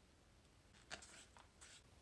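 Near silence, with a few faint light clicks about a second in: a wooden stirring dowel and paper buckets being handled as thick mixed silicone is poured from one bucket into another.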